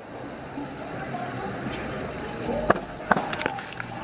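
Outdoor background noise with a low rumble about two and a half seconds in and two sharp knocks shortly after, from a handheld camera being moved and handled.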